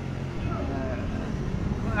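Steady low rumble of street traffic, a vehicle engine running close by, with faint voices in the background.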